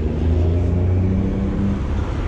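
Low, steady engine rumble of a road vehicle running nearby.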